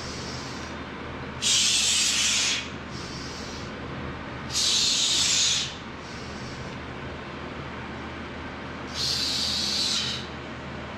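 A weightlifter's forceful breaths while holding a loaded barbell on his back between squat reps: three loud, hissing breaths about a second long, with softer breaths between them, over a steady low hum.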